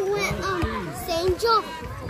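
Several voices talking and calling out over one another, some of them high like children's.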